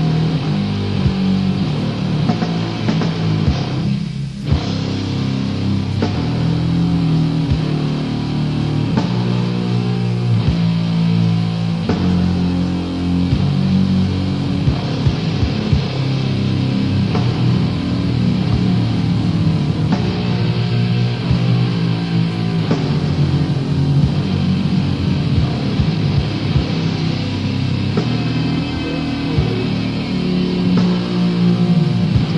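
Old-school death metal from a 1990 demo recording: distorted guitar riffing over bass and drums, with a short break in the guitars about four seconds in.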